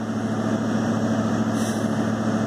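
Truck engine idling steadily, an even low hum with no change in speed.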